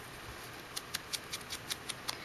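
Faint quick light taps, about five a second, of a foam sponge dauber being dabbed to sponge black ink onto the edges of punched cardstock. The taps pick up again under a second in.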